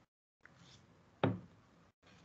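A single dull knock about a second in, over faint background noise, like a bump on a desk or microphone.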